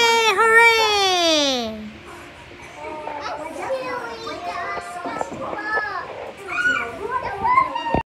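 A young child's loud, high, drawn-out vocal call that slides down in pitch over about two seconds, followed by quieter babbling and chatter from small children.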